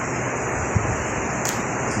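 Steady hissing background noise of a hall during a pause in a speech, with a faint click about three-quarters of a second in.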